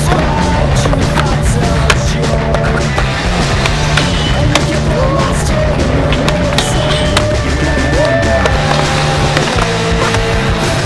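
Skateboards rolling on concrete, with the clacks of board pops and landings scattered throughout, over music with a steady bass line.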